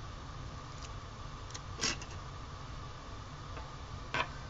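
Small scissors snipping sticker paper: one crisp snip about halfway through, with a few faint clicks around it, over a steady low room hum.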